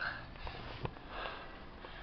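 Handling noise from a handheld camera being swung around: rustling with a sharp click a little under a second in, and a sniff close to the microphone at the start.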